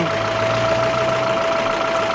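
Car engine idling close by: a steady low hum with a thin steady whine over it.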